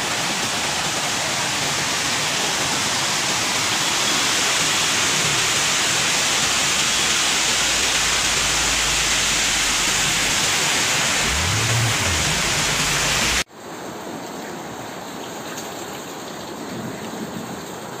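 Heavy rain and flowing floodwater in a loud, steady rush that cuts off suddenly about two-thirds of the way through. A quieter wash of water follows.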